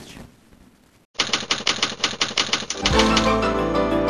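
Typewriter key clicks in a quick, even rhythm, about seven a second, start just after a second in. Near the middle, theme music with a bass line comes in under the clicks and carries on with them, as the programme's closing title jingle.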